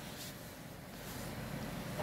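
Faint steady low hum and hiss of room tone, with a light tick near the start.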